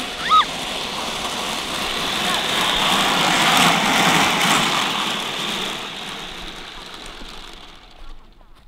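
Wheeled grass sled rolling down a grassy slope: a steady rushing, rattling noise that grows louder toward the middle as it passes and fades away over the last couple of seconds. Near the start a short high-pitched cry.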